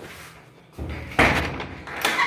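Old painted wooden door pushed and banged shut: a short scrape, then a sharp bang a little past the middle that rattles and dies away.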